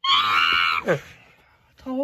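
A person's high-pitched scream, held for under a second and then dropping sharply in pitch as it fades. A shorter, lower vocal sound follows near the end.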